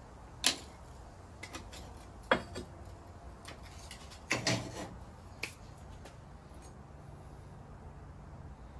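A few sharp knocks and clinks of fired, glazed stoneware pots being handled and set down on the kiln shelf, the loudest about half a second in and near two seconds in, with a small cluster around four and a half seconds, over a faint steady hum.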